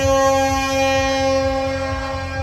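A plastic toy horn blown in one long, steady, loud note.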